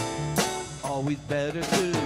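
Live worship song: women singing over keyboard and acoustic guitar, with a few sharp percussive strokes.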